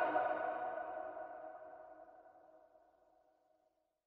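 The last sustained note of the song ringing out and fading away over about two seconds, then silence.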